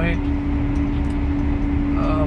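John Deere 7R 290 tractor's six-cylinder diesel running under way on the road, heard inside the cab as a steady low drone with a constant hum over it.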